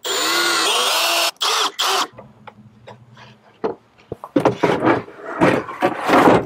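Compact cordless drill driving screws into a wooden mounting board: one run of about a second and a half, then two short bursts, the motor's whine shifting in pitch as it loads up. After about two seconds it stops, leaving quieter knocks and handling noises.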